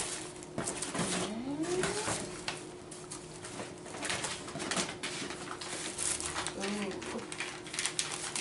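Gift bag and its wrapping rustling and crinkling in short, irregular crackles as items are taken out of it by hand.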